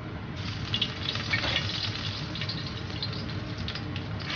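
Chopped scallion hitting hot oil in a wok with Sichuan pepper powder, setting off a steady sizzle with scattered crackles that starts just after the start.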